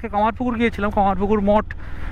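A man speaking over the steady low rumble of a motorcycle riding along a dirt lane; his talk pauses near the end.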